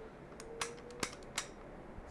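A few faint clicks of a Bersa TPR9 pistol's slide and frame being handled in the hands during reassembly, roughly half a second apart.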